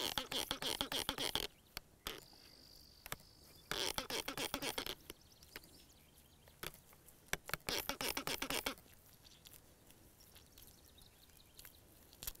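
Hand trigger spray bottle squirting water in three quick runs of several pumps each, separated by pauses, wetting a soil sample in the palm until it is saturated.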